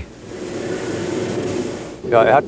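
Steady mechanical noise with a faint low hum, swelling a little and easing off near the end.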